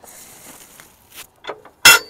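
A sharp metallic clank with a short ring near the end, after a couple of light clicks, from the cab-raising gear and safety of a tilted Kenworth K100 cabover as the cab is checked for height.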